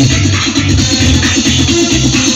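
Loud electronic dance music with a steady, pulsing bass beat, played over a stage sound system.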